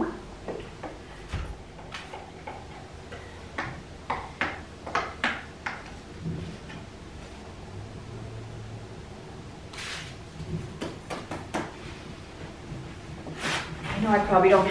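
Scattered light knocks and clicks as painting supplies are picked up and set down on a drop cloth, with two short rustling scrapes, one about ten seconds in and one near the end.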